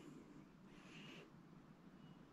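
Near silence: quiet outdoor room tone, with one faint, brief high sound about halfway through.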